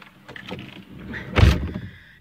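A single heavy thump inside a vehicle cab about one and a half seconds in, preceded by quieter rustling and light knocks.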